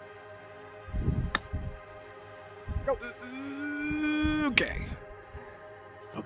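Golf club striking the ball on a short chip shot: a single sharp click about a second and a half in, over steady background music. A drawn-out voice follows about three seconds in.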